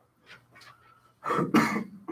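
A person coughing once loudly, a little over a second in.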